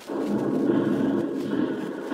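Radio-drama battle sound effect: a low, rumbling din that starts suddenly and holds steady, standing for a hand-grenade attack on a machine-gun nest.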